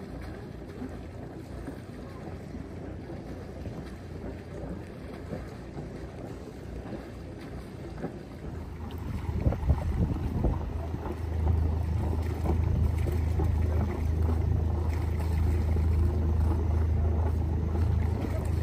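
Boat engine running with water and wind noise while cruising on the river; about halfway through a louder, steady low engine hum takes over.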